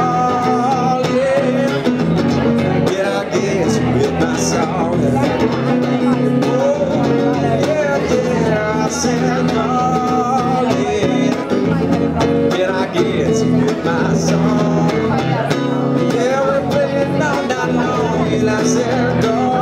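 A man singing a song while strumming chords on an electric guitar.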